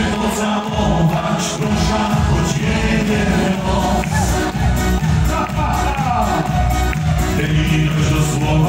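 Live Polish schlager song: a male lead singer with two female backing singers, over music with a steady beat, heard from the audience in a hall.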